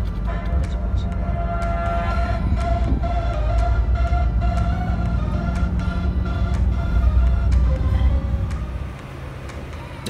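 Low, steady rumble of a moving BharatBenz sleeper bus heard from inside the cabin, with music playing over it; the rumble drops away near the end.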